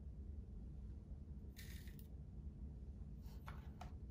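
A metal tablespoon scooping coarse-ground coffee out of a grinder's cup: one soft gritty scrape about one and a half seconds in, then a few short scrapes and taps near the end as the spoonful is levelled. A low steady hum runs underneath.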